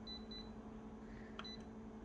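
Short high electronic beeps from a photocopier's touch-screen control panel as its keys are pressed: two quick beeps at the start and one more about one and a half seconds in, over a low steady hum.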